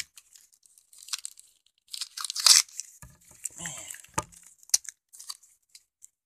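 A heavily taped mail envelope being torn open: paper and packing tape ripping and crinkling in irregular bursts. The loudest rip comes about two and a half seconds in, followed by a few sharp snaps.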